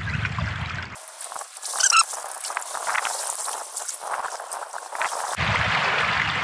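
Shallow seawater trickling and splashing around a coral trout being cleaned in it. A brief high squeak comes about two seconds in.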